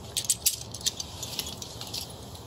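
Climbing hardware and rope being handled at a harness: scattered light clicks and rattles of metal gear, busiest in the first half second.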